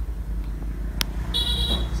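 A sharp click about a second in, then a short high-pitched beep lasting about half a second, over a low steady rumble.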